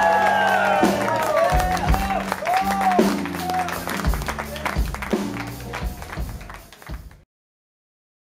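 Live blues-rock band playing out the end of a song: electric guitar with bending notes over bass and drum hits, with the audience clapping and cheering. It grows quieter after about three seconds and cuts off abruptly about seven seconds in.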